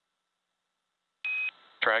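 Near silence, then a little over a second in a single short, high beep on the mission radio loop, just ahead of a call from SpaceX mission control. A man's voice over the radio begins near the end.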